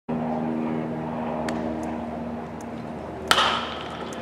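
Metal baseball bat hitting a pitched ball a little over three seconds in: one sharp crack with a short ringing ping, over a steady mechanical hum.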